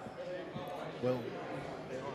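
Indistinct, off-microphone conversation between people at a council dais, with a dull thump about a second in.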